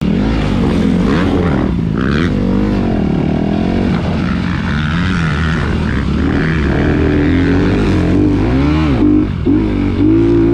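Motocross bike engine under hard riding, revving up and falling back over and over as the throttle opens and closes. There is a brief throttle chop just before the end, then it revs up again.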